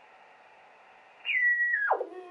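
Faint receiver hiss, then the Heathkit VF-1 VFO's carrier heard as a whistling beat note in an Elecraft KX3 receiver tuned near 27 MHz. The tone comes in high about a second and a quarter in, holds, then slides sharply down in pitch near the end as the VFO dial is turned.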